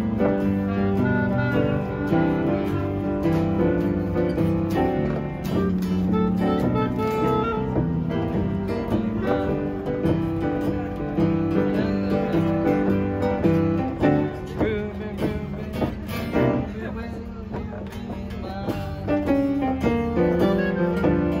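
Acoustic guitar and piano playing music together, with held notes and chords.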